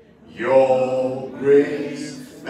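Voices singing together unaccompanied, held notes beginning about half a second in.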